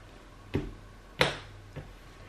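Tarot cards being handled and drawn from the deck: two sharp card snaps about two-thirds of a second apart, the second louder, then a faint tick near the end.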